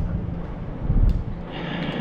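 Bicycle rolling across a concrete garage floor: a low rumble of tyres and wind on the microphone, with a steady low hum underneath and a heavier low bump about a second in.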